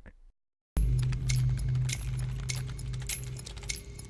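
Electronic title-sequence sound design: after half a second of dead silence, a low steady drone with scattered glitchy clicks and ticks.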